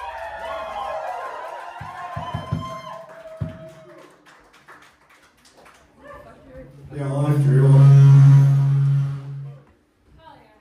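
A live band between songs: voices and whoops, a few loose drum hits on the kit, then a loud held low note from an amplified instrument for about two and a half seconds that cuts off abruptly.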